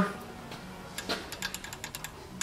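Rocker arms of a Honda GX-series V-twin being wiggled by hand at top dead center, giving small metallic clicks as they move through their valve clearance, the sign that both valves are closed and slack. The clicking starts about a second in and comes several times a second, unevenly.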